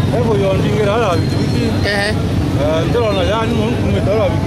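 A man talking in a local language over a steady low rumble of outdoor background noise.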